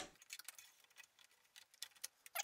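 Faint scattered clicks and taps of an RX 580 graphics card being fitted into a PC's PCIe slot, the sharpest click near the end.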